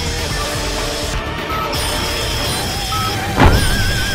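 Cartoon explosion sound effect: a steady rumbling crash with wavering high electronic tones, then a louder blast about three and a half seconds in.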